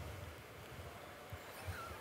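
Quiet room tone in a lecture hall, a pause with no one answering. A few soft low knocks and a brief faint squeak come near the end.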